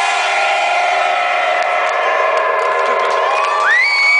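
Club techno music in a breakdown: sustained synth chords with the bass beat dropped out, and a tone rising in pitch near the end, under a crowd cheering.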